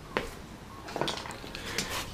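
Faint handling sounds, with a light knock or clink shortly after the start and another about a second in.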